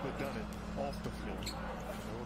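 Basketball dribbled on a hardwood court, a few separate bounces, heard in the game broadcast's audio.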